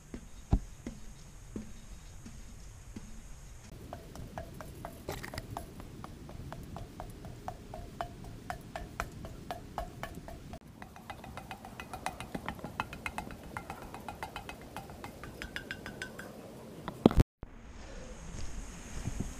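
Footsteps climbing a steep metal stairway, each step a sharp clank with a short metallic ring, coming in quick succession from about four seconds in. The sound cuts off abruptly near the end.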